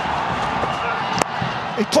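Steady stadium crowd noise, with a single sharp crack of a cricket bat hitting the ball a little over a second in.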